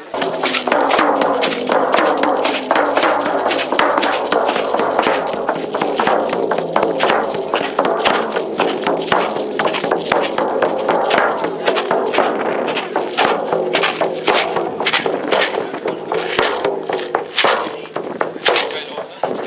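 Hand-held frame drums struck with padded beaters: a loud, continuous run of beats.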